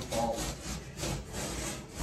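Rubbing and rustling close to the microphone of a handheld phone, a quick irregular series of scratchy strokes.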